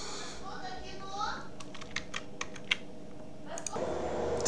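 Typing on a computer keyboard: a quick run of about ten keystrokes in the middle, as commands are entered at a terminal.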